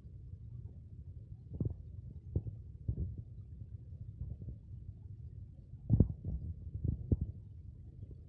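Low, steady rumble with several soft thumps, a few about two to three seconds in and more around six to seven seconds: handling noise on a handheld phone's microphone.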